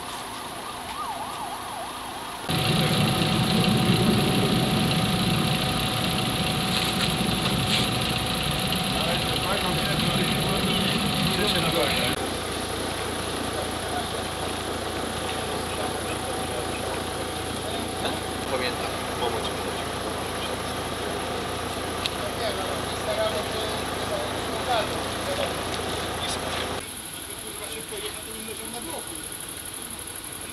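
An engine running steadily with indistinct voices over it, louder for the first several seconds and then settling to a lower steady level.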